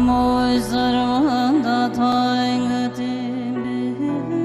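Background music: a slow melody held on long notes, with a few brief wavering turns, over a steady low drone.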